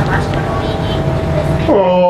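Audio of a video playing through a phone's small speaker: a steady low rumble with a faint held tone, and a voice coming in near the end.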